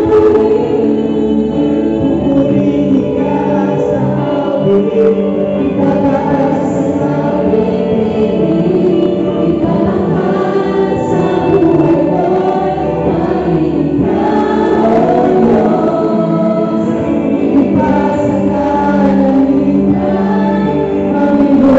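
Several singers performing a worship song together through microphones over band accompaniment, the singing continuing without pause.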